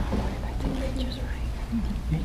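Quiet, indistinct speech in short fragments over a steady low rumble.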